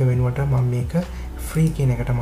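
A man speaking in Sinhala.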